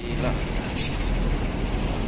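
Outdoor traffic noise beside buses and cars: a steady low engine sound with faint voices, and one brief high hiss just under a second in.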